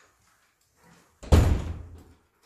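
A door slamming shut once: a heavy thud about a second and a quarter in that dies away within about a second.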